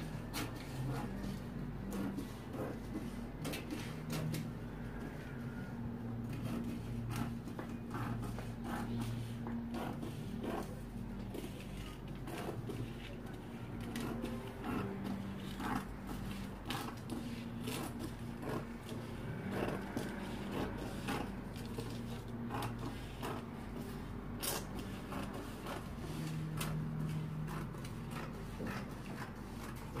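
Scissors cutting through pattern-drafting paper: a long run of irregular snips and paper crackles, over a low steady hum.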